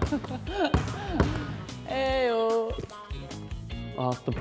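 A basketball bounced a few times on a hardwood court floor as the player dribbles before a shot, under background music.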